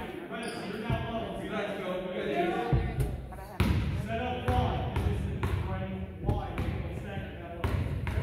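A basketball bouncing a few times on a hardwood gym floor at irregular intervals, over steady chatter of voices.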